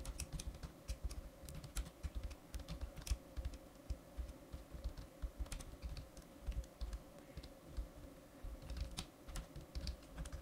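Typing on a computer keyboard: faint, irregular bursts of keystrokes while code is being entered.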